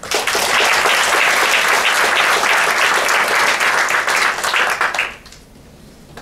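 Audience applauding in a lecture hall, starting suddenly and dying away about five seconds in.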